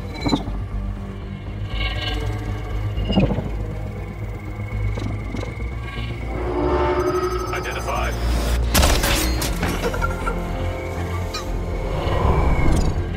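Film soundtrack: a brooding score over a steady low drone, mixed with sci-fi sound effects. There are short sharp hits about a second and three seconds in, gliding whooshes later on, and a loud sudden burst near the end.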